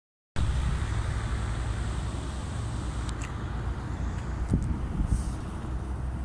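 Wind buffeting a phone's microphone: a steady, uneven low rumble, with a few faint clicks.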